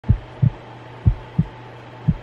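Heartbeat sound effect: pairs of low thumps, a lub-dub about once a second, over a faint steady low hum.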